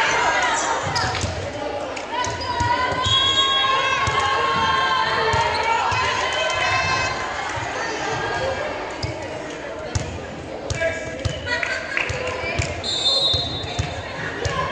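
A volleyball bounced again and again on a hardwood gym floor, under the calls and chatter of players and spectators in a large gym.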